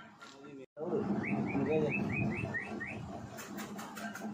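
Indian palm squirrel chirping in a quick run of about eight short rising notes, about four a second, over a busy lower background. A few sharp clicks come near the end.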